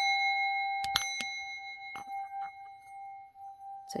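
Small metal singing bowl struck once with a wooden striker, then ringing on in one clear tone with higher overtones that slowly fades. Three light clicks come about a second in.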